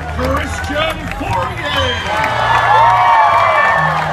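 A crowd of fans cheering and shouting, many voices overlapping, swelling in the second half, with scattered clapping.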